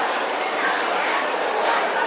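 Steady babble of many diners talking at once, with no single voice standing out.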